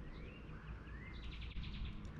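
A songbird singing: two rising whistled notes, then a fast, high trill a little after the middle, with a few short chips.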